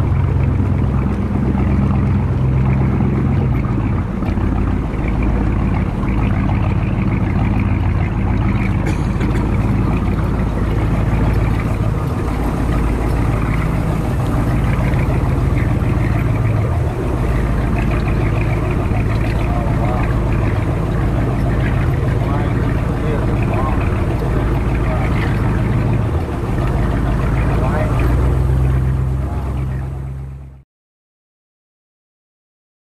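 Motorboat engine running steadily as the boat cruises, a low hum with water and wind noise over it; it fades out right at the end.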